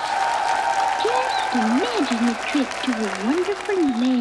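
Studio audience applauding, with a voice speaking over the applause from about a second in.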